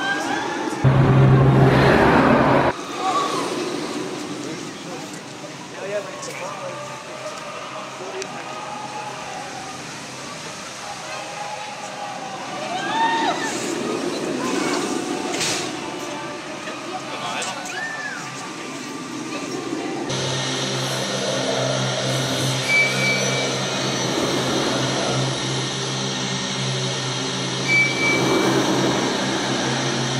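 Sky Scream, a launched Premier Rides Sky Rocket II steel roller coaster: a loud rush of the train with a deep rumble about a second in, then riders screaming in rising and falling cries as the train runs the course. From about two-thirds of the way through, horror-themed ride music with held droning tones takes over.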